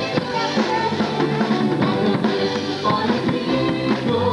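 Live band music played through amplifiers: a drum kit keeps a steady beat with bass drum and snare under keyboard.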